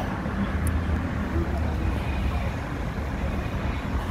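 Steady city street traffic noise: a continuous low rumble of car and bus engines and tyres.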